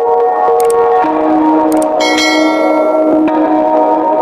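Channel intro music of sustained, bell-like ringing tones, with a bright chime about halfway through.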